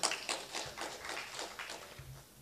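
Faint, scattered audience clapping that fades away over a couple of seconds.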